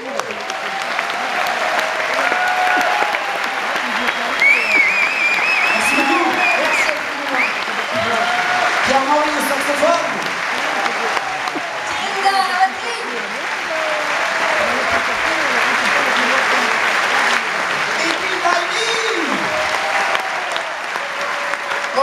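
Concert audience applauding at the end of a song. The clapping swells over the first second or two, then holds steady, with voices calling out over it.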